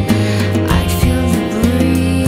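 A gentle pop-rock song: strummed acoustic guitar over a steady bass, with a voice sliding between notes.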